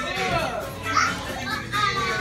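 Young children chattering and calling out together around a table, one child's voice briefly loudest about halfway through, with music playing faintly underneath.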